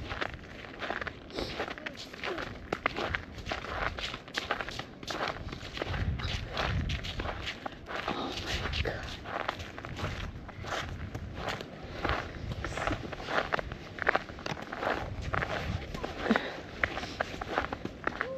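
Footsteps of a person walking along a snowy, slushy path, a steady run of steps.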